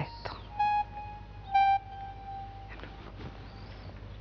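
Soft background music under a quiet pause: two short, steady electronic-sounding notes, the second slightly lower and held for about a second before fading.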